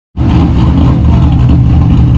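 A car engine idling nearby, a steady low rumble that begins just after a short dropout.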